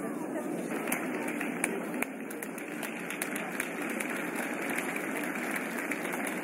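Audience applauding in an ice rink arena: a steady patter of many hands clapping.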